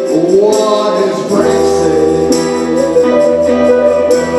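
Live trio playing a song: electric guitar, electric bass and drums with tambourine, and singing. A low bass line comes in about one and a half seconds in.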